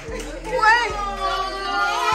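Several women's voices squealing and calling out excitedly, high-pitched and overlapping, loudest about half a second in.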